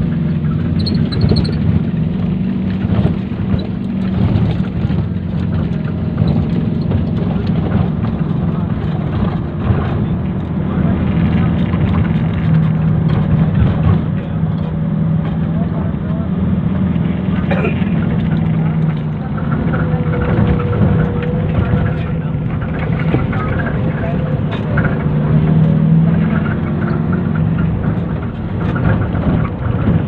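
Steady low drone and rumble of a moving vehicle's engine and road noise, heard from on board.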